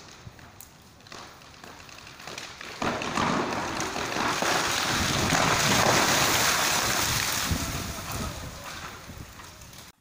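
Wind rushing over a phone's microphone outdoors. It swells about three seconds in and fades away near the end.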